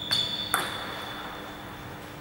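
A sharp tap that sets off a high, clear ringing ping, fading away over about a second and a half, with another knock about half a second in.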